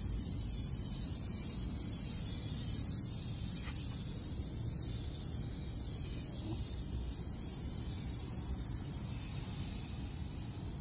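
Aerosol can of interior detailer hissing as it is sprayed onto a car door panel, a long spray that stops about three seconds in.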